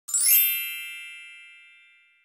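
A single bright chime: several high ringing tones struck together just after the start, then fading away smoothly over nearly two seconds.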